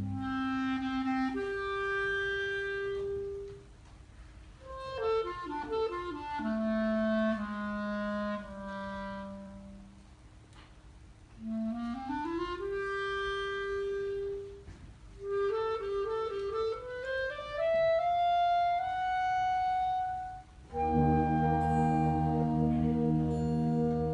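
Wind band concert piece in a solo passage: a single wind instrument plays a melody in phrases with short rests and quick rising runs, and the full band comes back in about a second before the end.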